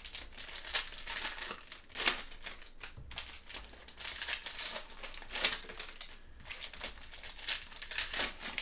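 Foil wrappers of Prizm UFC trading-card packs crinkling and crackling as gloved hands open them and handle the cards, in irregular bursts with sharper crackles about two seconds in and just past the middle.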